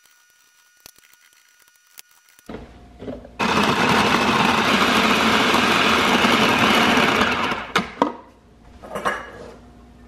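Electric food processor running steadily for about four seconds as it chops garlic and turmeric root, then stopping abruptly. A few sharp clicks and knocks follow as the processor bowl is handled.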